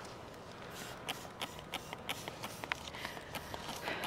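Trigger spray bottle spritzing a lemon tree's leaves with a run of short, faint squirts, about three a second.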